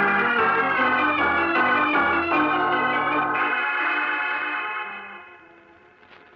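Organ music bridge between two scenes of a radio drama: a short passage of held chords that change several times, then fades away over the last two seconds.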